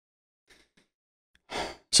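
Near silence, then a man's short audible breath about one and a half seconds in, just before he starts to speak.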